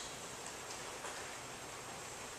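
Steady, faint background hiss of room tone in a pause between speakers, with no distinct events.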